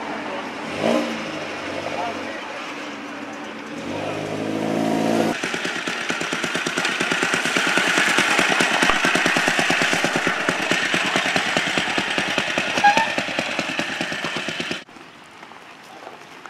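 Vintage military motorcycle engine running as it rides along with two people aboard, giving a rapid, even beat of exhaust pulses. It grows louder over the first couple of seconds, then holds steady until it cuts off abruptly. Before it, for about five seconds, there is a mix of engine sound and voices.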